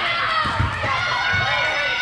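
Players' and teammates' voices calling out over one another during a volleyball rally on an indoor court, with low thuds from the play about half a second in and again near a second and a half.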